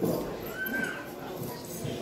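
A performer's voice calling out in short, yelping cries during a pause in the dance music.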